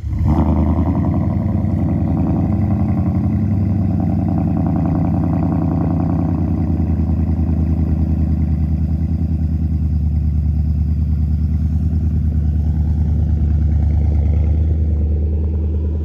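2021 Nissan Titan Pro-4X 5.6-litre V8 on a cold start through a true-dual Flowmaster Super 10 exhaust: it catches suddenly right at the start, then idles steadily and loudly with a strong low rumble.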